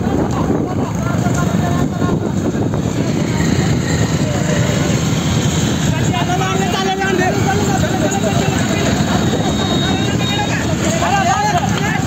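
Motorcycle engines running at riding speed with wind and road noise, heard from a moving motorcycle. Men shout and call out over it, more from about halfway through.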